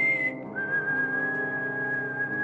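Someone whistling two long, pure notes over a sustained musical backing: a high note, then a slightly lower one held from about half a second in.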